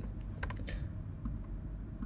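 A few keystrokes on a computer keyboard, clustered about half a second in, as a formula is edited.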